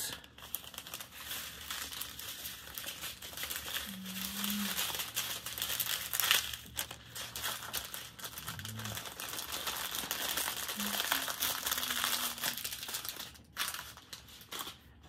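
Small clear plastic bags of diamond-painting drills crinkling and rustling as they are handled and shuffled, with brief louder crackles.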